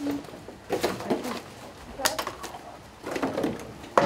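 Waste-sorting line ambience: plastic bottles and wrappers clicking and rustling as they are picked from the conveyor, with sharp clicks about two seconds in and at the end. Indistinct low wavering vocal sounds come in between.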